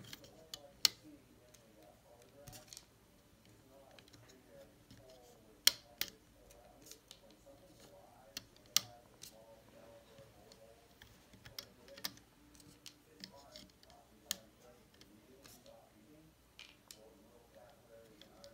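Quiet handling of a Rainbow Loom: small rubber loom bands are stretched and snapped onto its clear plastic pegs, with scattered sharp clicks, about a dozen, spaced unevenly.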